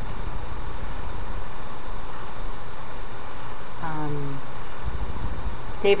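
Steady low rumble and hiss of an open microphone on a web-conference audio line while no one speaks, with a brief voice sound about four seconds in.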